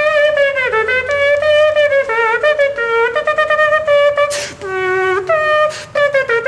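Beatboxer making a horn-like melody with his mouth and cupped hand: a string of held, brassy notes stepping up and down, some bending downward. Two short sharp hisses cut in near the end.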